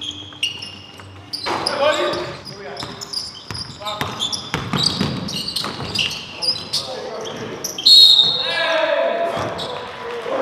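Sounds of a basketball game in a gym hall: sneakers squeak in short high chirps on the hardwood court, the ball bounces, and players shout, loudest near the end.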